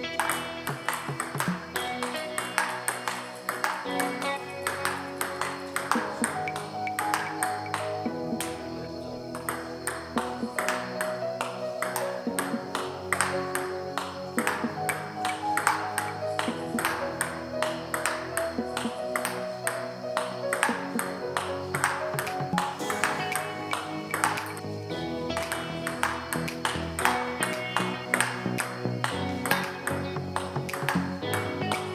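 A table tennis rally: a plastic ball clicking off the bats and the table in quick succession. Background music with a steady beat plays over it.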